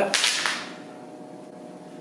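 A brief swish right at the start, then quiet room tone with a faint steady hum.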